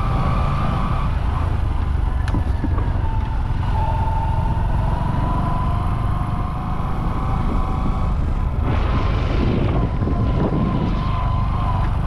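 Engine and road noise of a vehicle driving along paved streets, heard from on board: a steady low rumble with a faint steady whine above it, and a brief rush of noise about nine seconds in.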